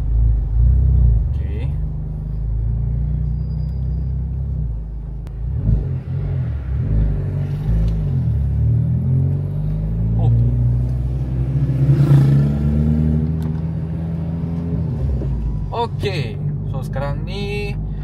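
Honda Civic Type R FL5's turbocharged 2.0-litre four-cylinder engine heard from inside the cabin as the car pulls away in first gear and goes up into second. It makes a steady low hum with a rise in pitch partway through.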